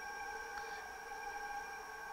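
Roland CAMM-1 GS-24 vinyl cutter's feed motor running to advance the vinyl sheet while the down button is held: a steady whine made of several held tones.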